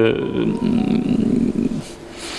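A man's drawn-out, rough, creaky hesitation sound (a low "ehh") between words, followed by a breath near the end.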